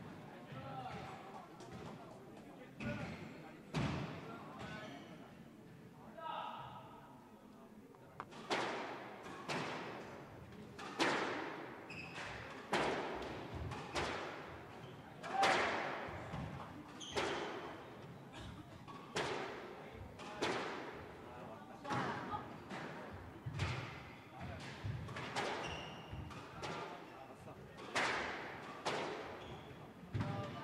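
Squash ball being struck by rackets and smacking off the court walls in a rally, sharp hits about once a second with an echoing ring, after a couple of lone hits in the first few seconds.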